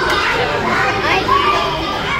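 Children's voices calling and chattering over one another, high and excited.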